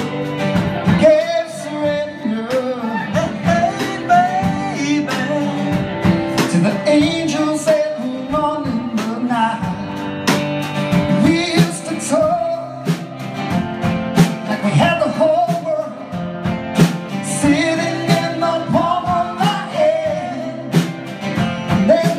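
A man singing a song live while strumming an acoustic guitar in a steady rhythm.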